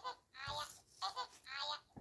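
A quiet, high-pitched voice in three short phrases, likely the same 'aja, aja' said just before and after.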